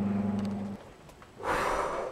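Steady low mains hum from a running valve amplifier and its bench test gear, cut off abruptly about a third of the way in. After a quiet pause, a short breathy exhale near the end.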